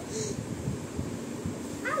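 Brief high-pitched vocal sounds from a small child, with a few soft low bumps in between and a short falling-pitch voice at the end.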